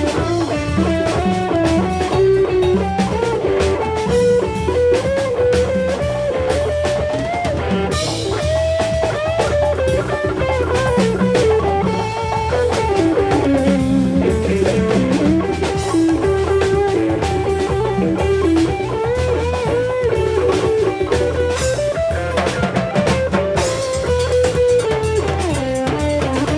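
Live rock band playing an instrumental passage: an electric guitar plays a lead line with bent, gliding notes over a steady drum-kit beat.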